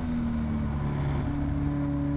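Caterham Seven race car's engine, heard from its open cockpit while taking a fast corner. The note is steady, steps up in pitch about a second in, then holds at the higher note.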